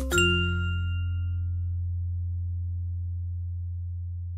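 Background music: a light, bell-like tune lands on a final chord just after the start. Its chime tones fade away over a couple of seconds while a low bass note holds on.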